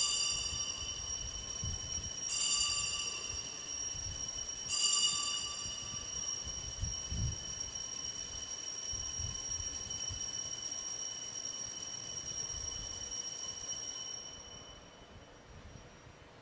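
Altar bells rung three times, a couple of seconds apart, each ring high-pitched and ringing on long after the strike before fading out near the end. They mark the elevation of the chalice just after the consecration at Mass.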